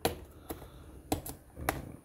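Four sharp clicks about half a second apart from fingers and plastic working at the wrap of a sealed trading-card box to get it open.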